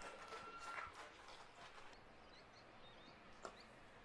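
Near silence: faint outdoor ambience with a few faint high chirps and a thin steady tone that stops about a second in.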